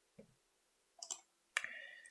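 Faint clicks of a computer mouse, a quick pair about a second in, with a short faint sound near the end.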